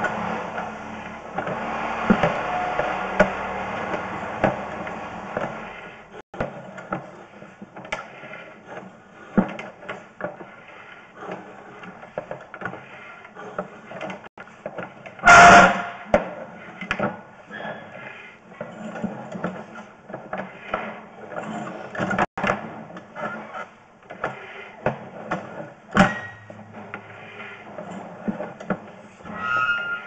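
Irregular clicks and knocks of a sewer inspection camera and its push rod being fed through a drain pipe, busier over the first few seconds, with one loud bang about halfway through.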